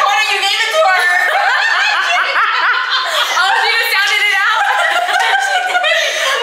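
A group of women laughing and chattering over one another, with no break in the voices.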